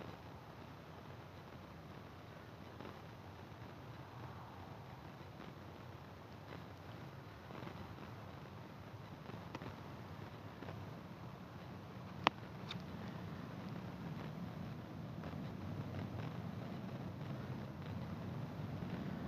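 Distant airplane engine rumble overhead, low and steady, slowly growing louder as the plane nears. A single sharp click about twelve seconds in.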